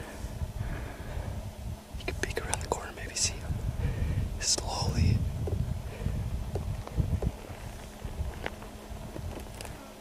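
A man whispering close to the microphone, with a low rumble underneath.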